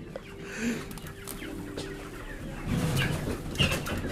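Chickens clucking in their cages, louder in the last second or so.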